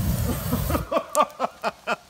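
A brush campfire flares up with a rushing whoosh that dies away within a moment, followed by a person laughing in a quick run of short ha-ha bursts that trail off.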